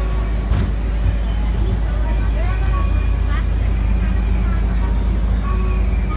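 Steady low rumble of road traffic, with a double-decker bus close by, and scattered snatches of people's voices over it.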